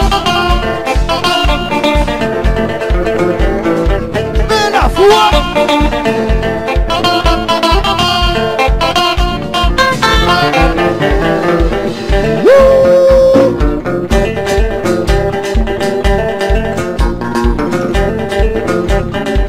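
Live band playing an instrumental stretch: electric guitar over keyboard, with a drum kit's kick drum keeping a steady, even beat. About two-thirds of the way through, one note rises and is held for about a second.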